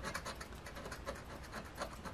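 A lottery scratcher coin scraping the scratch-off coating off an instant lottery ticket in rapid, quiet back-and-forth strokes.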